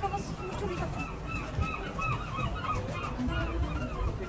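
A flock of birds calling: many short, overlapping honking calls repeating several times a second, over crowd noise.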